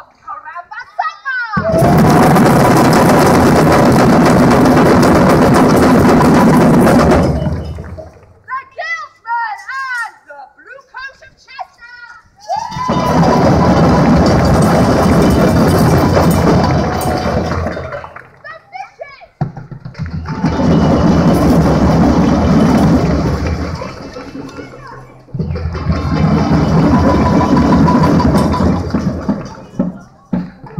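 Parade drum band playing loud passages of about five seconds each, four times, with abrupt starts. Voices are heard in the short breaks between the passages.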